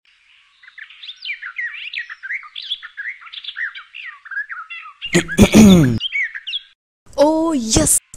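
Small birds chirping in a dense stream of quick twittering calls. A man's loud voice breaks in about five seconds in, and a short spoken exclamation comes near the end.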